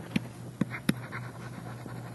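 Three short clicks of a stylus tapping on a tablet while a word is handwritten, over a faint low steady hum.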